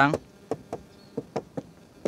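About five light knuckle knocks on a car's plastic rear door trim, irregularly spaced. The panel is backed with 5 mm glasswool sound-deadening, and the knocks show how damped it now is.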